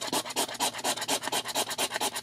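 A gold-coloured coin scraping the scratch-off coating from a lottery ticket in rapid, even back-and-forth strokes.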